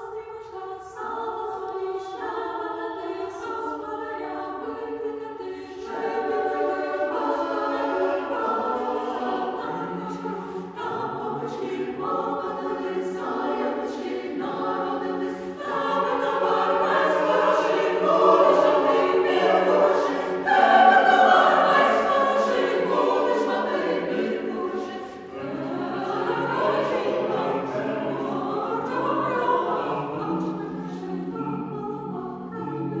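Church choir singing a Ukrainian Christmas carol (koliadka) in several voice parts. It swells louder about two-thirds of the way through, drops briefly, then begins a new phrase.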